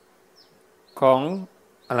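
A man's voice speaking Thai in a sermon: one short phrase about a second in, and speech starting again near the end. In the quiet gap before, a faint steady buzz and a few faint high chirps.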